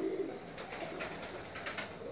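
Faint cooing of a pigeon.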